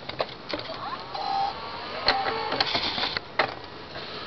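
Toshiba laptop's CD drive spinning up a disc at power-on: a rising whir that settles into a steady whine, with several sharp clicks.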